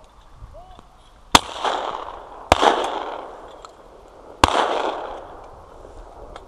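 Three shotgun shots, the first about a second and a half in, the second about a second later and the third about two seconds after that, each trailing off in an echo lasting about a second.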